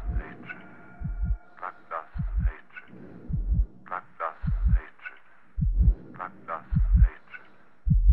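A heartbeat sound effect opening a gothic rock track: deep double thumps, lub-dub, about once a second, with a sharper rhythmic rattle layered above them.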